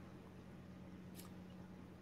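Near silence: a faint steady low hum of line noise, with one faint tick a little over a second in.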